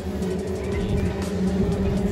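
Steady low hum from the motorised parade float that carries giant bee puppets, over the noise of a street crowd.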